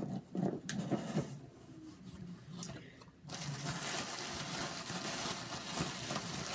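Handling and rustling of packaging as a cardboard mystery box is opened and an item is unpacked: scattered clicks and scrapes at first, then a steady rustle from about three seconds in.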